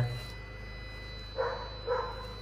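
Two short barks from a dog about half a second apart, over a faint steady hum.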